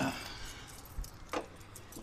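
Faint rustling and handling noise as things are moved about, with a single short knock about a second and a half in.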